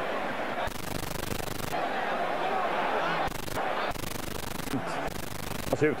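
Boxing arena crowd cheering as a steady roar, its level and tone changing abruptly several times where the replay footage is cut together.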